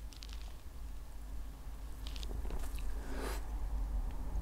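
Faint mouth sounds of a person sipping and tasting beer: a few soft lip smacks and clicks about halfway through, and a brief soft noise shortly after.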